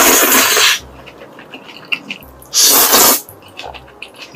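Black bean noodles (jjajangmyeon) slurped up from chopsticks in two long, loud slurps, the first ending under a second in and the second about two and a half seconds in.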